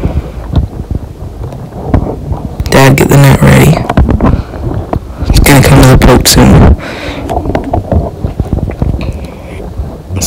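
Wind rumbling and buffeting on the microphone, with two loud bursts of a man's voice about three and six seconds in.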